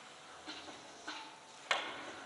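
A few faint ticks, then one sharp click with a short echo about three-quarters of the way through, in a large hall.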